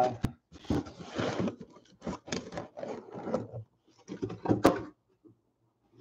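Shrink-wrapped trading-card hobby boxes being pulled out of a cardboard shipping case and set down on a table: an irregular run of cardboard rustles, scrapes and knocks, with one sharp click a little after halfway.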